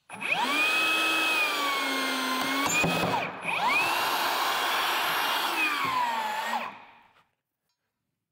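Battery-powered Metabo HPT rebar bender/cutter motor whining as it drives its cutter through a length of rebar, with a sharp snap about three seconds in as the bar is cut. After a short stop the motor starts again and runs about three more seconds, its pitch falling before it cuts off.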